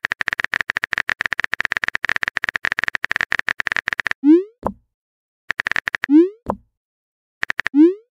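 Phone-keyboard typing sound effect, a fast run of clicking taps, then a short rising 'bloop' message-sent sound about four seconds in. Two more brief bursts of typing follow, each ending in the same send sound, the last right at the end.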